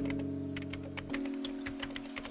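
Quick, irregular keyboard typing clicks over a lo-fi music track holding a chord; the chord's lower notes drop out about a second in.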